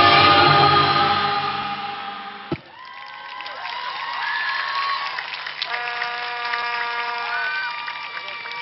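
Dance-show music playing loudly, fading out and ending on a single hit about two and a half seconds in. After it, the audience cheers at a lower level, with long held calls.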